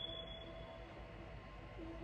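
Faint music from a massage chair's built-in Bluetooth speakers at the headrest: a few held notes, then a short melody line near the end.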